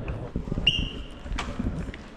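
Footsteps on a hard tiled hotel-lobby floor, a run of short knocks, with one short high squeak about two-thirds of a second in.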